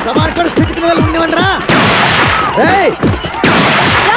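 Film soundtrack sound effects for a brawl: a rapid run of short falling-pitch zaps, about five a second, with whooshing swishes a little under two seconds in and again near the end, over music.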